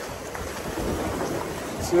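Small ocean waves breaking and washing up the sand as a steady hiss of surf, with wind rumbling on the phone microphone.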